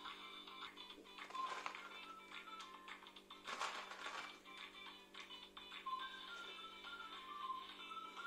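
Soft background music playing throughout. Faint rustling and light clicks of flaked almonds and a plastic tub being handled, heard most about one and a half seconds in and again around four seconds.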